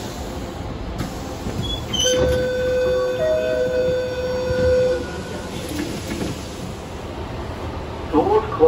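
Inside a double-deck suburban electric train stopped at a platform with its doors open: a steady rumble of the train and station, with a loud held tone lasting about three seconds starting about two seconds in.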